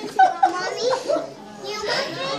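People talking, children's voices among them, with a brief louder burst about a quarter second in.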